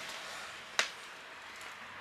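A single short, sharp click about a second in, over faint background noise.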